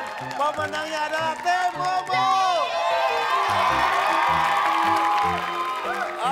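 Upbeat music with a rhythmic bass line under cheering and excited shouting and whooping from a studio crowd, the cheering swelling in the second half.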